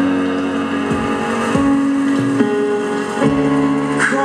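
Live keyboard music between sung lines: sustained chords that change every second or so, over low bass notes that glide into place.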